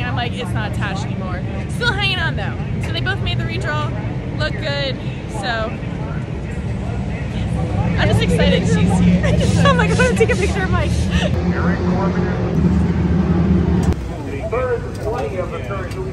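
Women talking and laughing close to the microphone, over a steady low rumble of engines that swells in the middle and drops away abruptly near the end.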